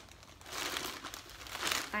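Thin plastic shopping bag crinkling as hands rummage in it, in two short bursts.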